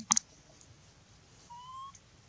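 Animal calls: a brief, sharp, high double chirp just after the start, then a thin whistle-like call rising slightly in pitch near the end.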